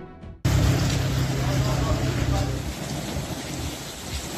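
Heavy summer downpour on a flooded street, a dense steady hiss of rain, cutting in abruptly a moment in. A low rumble runs under it for the first couple of seconds.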